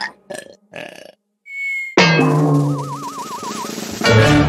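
Cartoon sound effects and music: a few short soft blips, a brief high ping, then a sudden loud musical sting about halfway in, with a wobbling tone over it, fading away. Another sting starts near the end.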